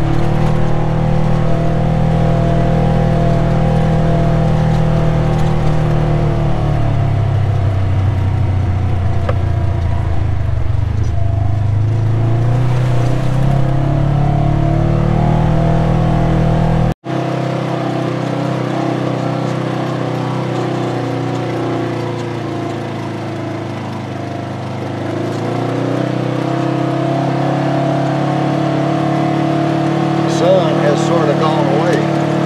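Polaris RZR 900 side-by-side's twin-cylinder engine running under way, its pitch dipping and then rising again with the throttle. The sound cuts out for an instant about 17 seconds in and comes back thinner, without its deepest low end.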